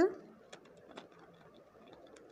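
Faint ticks and scratches of a ballpoint pen writing on paper, just after the tail of a spoken word.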